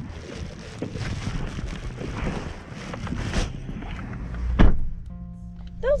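Wind and outdoor noise inside a pickup cab, which drops off sharply about three and a half seconds in. About a second later comes a single loud thump, followed by a brief steady tone.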